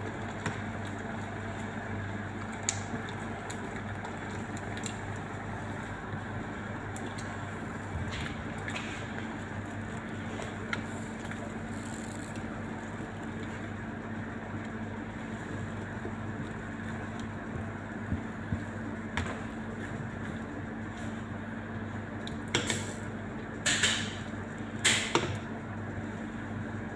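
Milk heating near the boil in a stainless steel pot: a steady hiss over a low hum. A few sharp metallic clinks, the wire whisk knocking against the pot, come near the end.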